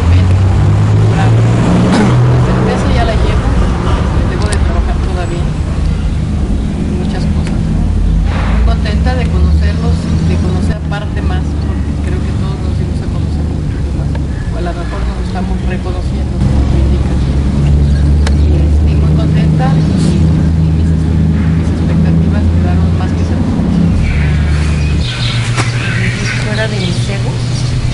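A woman talking in Spanish, partly buried under a loud, steady low drone.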